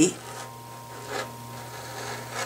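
Rotary cutter blade rolling through quilting fabric along the edge of a foundation paper, a soft scraping rub as the excess strip is trimmed away.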